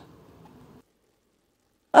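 Near silence: a faint hiss for under a second, then dead silence until a voice starts at the very end.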